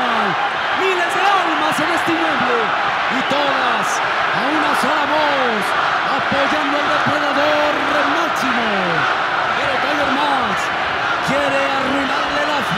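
A large arena crowd shouting and chanting: many voices call out in overlapping rising-and-falling shouts over a dense, unbroken crowd noise.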